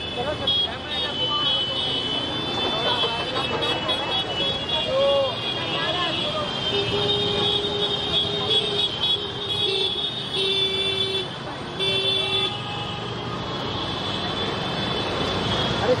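Street traffic from a large scooter and motorcycle procession, engines running, with crowd voices and horns honking. About halfway through, a horn sounds in a long hold followed by several shorter toots.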